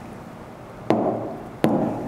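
Two sharp taps of chalk striking a chalkboard as it writes, one about a second in and the second near the end.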